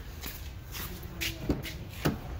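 Footsteps and shuffling, then a sharp click about one and a half seconds in as the driver's door latch of a 2019 Chevrolet Equinox is pulled open.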